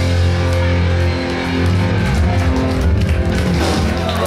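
Heavy metal band playing live: distorted electric guitars over bass and drums.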